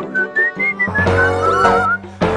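A cheerful tune whistled in short, gliding notes, joined about a second in by background music with a steady bass.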